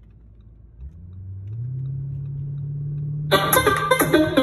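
Car engine and road rumble heard inside the cabin, the engine note rising about a second in and then holding steady as the car pulls away. Near the end, plucked-string music comes in loudly over it.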